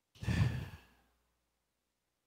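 A man's sigh into a handheld microphone, one breathy exhale of well under a second near the start.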